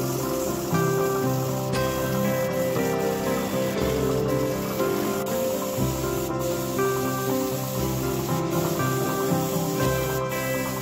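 Compressed-air spray gun hissing steadily as it sprays paint, under background music with long held notes.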